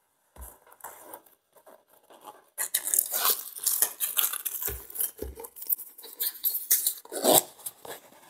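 A small cardboard box having the packing tape along its seam sliced with a small blade, then being opened: scratchy cutting and scraping with crackly clicks from about two and a half seconds in. A few dull knocks of the box on the table are mixed in.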